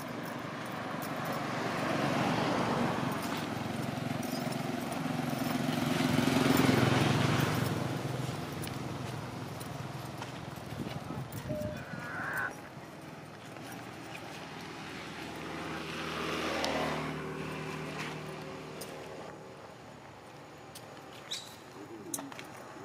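Road traffic: vehicles passing close by one after another, each swelling and then fading, the loudest about six to seven seconds in and another near the middle of the second half.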